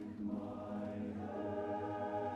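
Male barbershop chorus singing a cappella in close harmony, holding sustained chords; the chord moves and swells slightly about half a second in.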